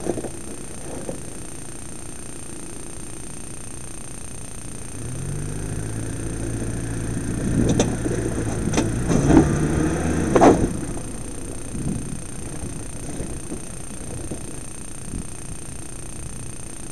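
Mitsubishi Pajero's engine revving as the 4x4 struggles for grip up a rocky slab, its wheels slipping. The revs build about five seconds in, with a few sharp knocks of tyres and stones on rock, and die back after about ten seconds.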